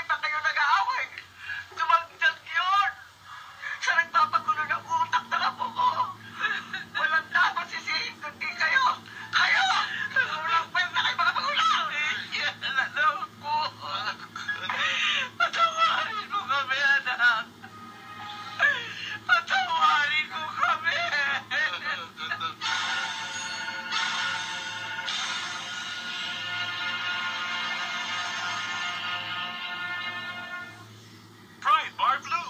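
Radio drama dialogue over a low, steady background music bed; for the last seven seconds or so the talk gives way to one long held note.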